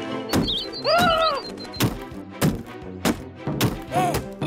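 Cartoon sound effects over background music: a string of sharp thunks, roughly one every half second after the first, with a short rising-and-falling pitched tone about a second in.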